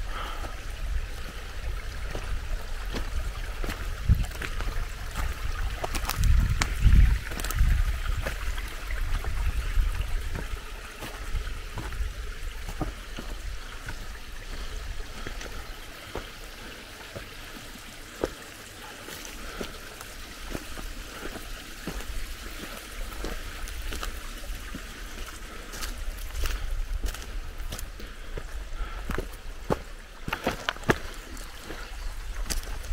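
A small mountain stream trickling steadily, with footsteps crunching over stones and leaf litter. Heavy low rumbles come in bursts around the sixth to eighth seconds.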